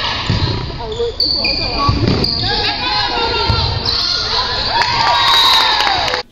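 Live sound of an indoor volleyball rally: players and spectators calling out and cheering over one another, with the knock of the ball being struck.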